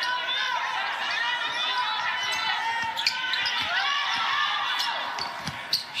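Basketball dribbled on a hardwood court in an arena, with sharp sneaker squeaks and scattered player and bench voices.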